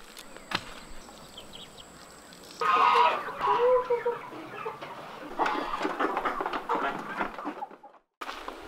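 A flock of chickens clucking as they are fed grain. The clucking comes in suddenly about two and a half seconds in, after a quieter stretch, and goes on until it fades out near the end.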